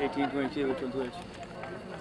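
Indistinct talk from people close to the microphone, with outdoor background noise.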